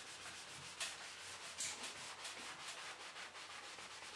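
Faint scrubbing of a wet sponge on vinyl wallpaper, washing it with sugar soap and water, in repeated strokes with a couple of slightly louder swipes about a second in and a little later.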